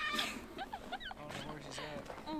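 A woman laughing excitedly, with short high-pitched squeals and whoops.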